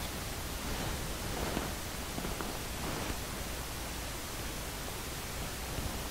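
Steady background hiss, with a few faint soft rustles from a painted canvas being handled.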